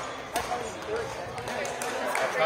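Badminton racket striking a shuttlecock: one sharp crack about a third of a second in, followed by a few fainter clicks, over the chatter of voices in a gym.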